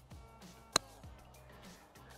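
A single crisp click of a wedge striking a golf ball on a 50-yard pitch shot, about three-quarters of a second in.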